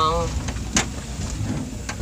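Low steady rumble of a car driving slowly, heard from inside the cabin, with a sharp click a little under a second in and another near the end.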